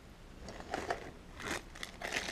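Faint crinkling of a thin clear plastic bag around a small camera mount as it is handled, a few short crackles in the second half.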